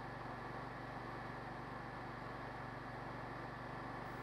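Ride-on mower's Honda engine running steadily at full throttle with the cutting blades not yet engaged: an even, unchanging hum.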